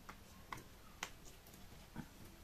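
Faint, irregular small clicks and ticks, about five of them, from handling and opening a small plastic cosmetic bottle of liquid illuminator.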